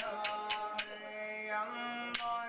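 Hindu devotional music: a chanted melody over a steady low drone, with sharp strikes about four a second that stop about a second in.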